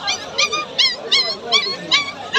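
Pomeranian puppies yipping and whimpering: a rapid series of short, high-pitched yelps, several a second, each dropping in pitch.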